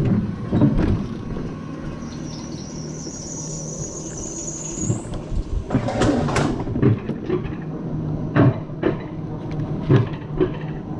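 Mountain coaster sled rolling along its steel rail track, with a steady rumble and rattle and several sharp knocks and clacks, heaviest about six seconds in. A high whine climbs slowly in pitch near the middle and cuts off suddenly.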